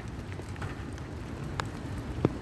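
Steady rain falling, with a few sharp drips ticking through it.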